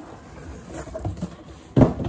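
Cardboard boxes scraping and rustling as an outer shipping box is slid off an inner cardboard box, then a single loud thump near the end as a box is set down or knocked.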